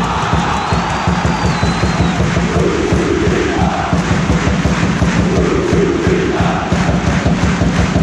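A large football crowd chanting and singing together in the stands, a repeated chant swelling about every two and a half seconds over the steady noise of the crowd.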